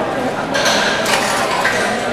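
Indistinct voices in a large indoor hall, with a few light clinks about half a second to a second in.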